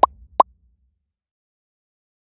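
Two short plop sound effects from an animated logo outro, about half a second apart, each a quick upward blip in pitch.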